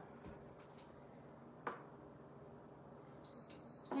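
Pampered Chef Deluxe Multicooker's control panel giving one steady, high-pitched beep lasting just over half a second near the end as its start button is held in to start it. A single faint click comes a little before halfway.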